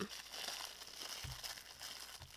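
Clear plastic wrapper crinkling as hands twist and pull at its tied top, a continuous fine crackle of rustling plastic. A soft low bump sounds a little over a second in.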